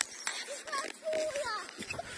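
Faint children's voices calling out at a distance, one drawn-out call near the middle.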